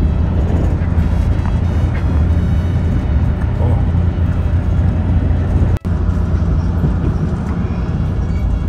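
Steady low rumble of a train heard from inside the carriage as it rolls into a station. The sound drops out for an instant about six seconds in.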